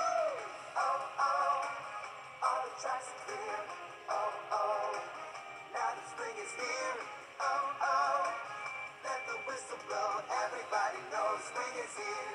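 A children's sing-along song, a voice singing over backing music, played through a computer's speakers in a small room.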